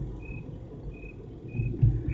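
A cricket chirping in short, even single chirps, about one every 0.6 seconds, as a radio drama's night-time background, with a low thump near the end.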